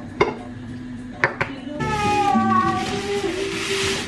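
Three sharp clinks as the bamboo lid of a glass jar is handled, then, from about halfway through, a steady rustling hiss of baking paper and granola sliding into the glass jar, over background music.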